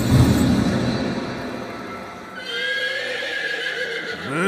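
Horse sound effect: a noisy clatter of hooves at the start, then a long whinny from about two and a half seconds in.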